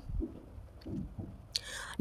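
Pause in a woman's speech: faint low rumbles, then a short breath drawn in near the end, just before she speaks again.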